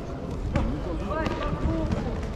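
Distant voices in a large sports hall, with a few sharp thuds or slaps spread across the two seconds.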